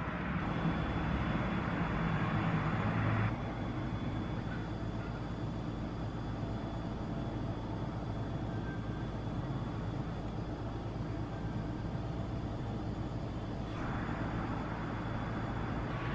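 Steady background noise of a room, a low rumble with a hiss over it and no distinct events. It is louder for the first three seconds and rises again near the end.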